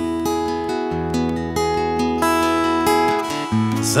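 Acoustic guitar strummed, chords ringing and changing about every second, with a man's voice coming back in to sing right at the end.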